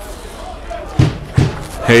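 Two dull thuds about a second in, less than half a second apart, over a low background murmur.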